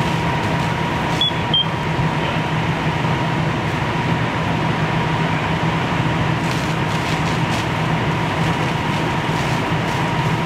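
Fire apparatus diesel engines and pumps running steadily, with a constant hum and a thin steady tone through it. Two short high beeps come about a second in.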